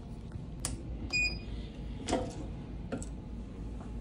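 Heat press giving a short electronic beep about a second in, over a low steady hum, with a few clicks and knocks from handling the press.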